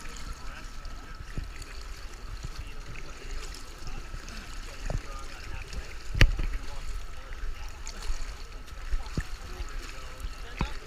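Pool water lapping and splashing against the gutter right beside the microphone, with swimmers splashing in the lanes. One sharp knock comes about six seconds in.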